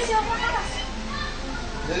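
Young children's voices, talking and calling out while they play.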